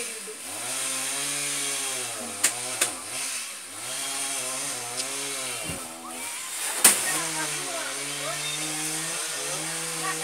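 Chainsaw running under load, its engine pitch repeatedly sagging and picking back up as it bites into the wood, with a few sharp knocks, the loudest about seven seconds in.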